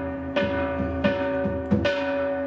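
Metal bell-like percussion struck four or five times at an uneven, slow pace, each stroke ringing on with several steady tones, accompanying a Buddhist ritual dance.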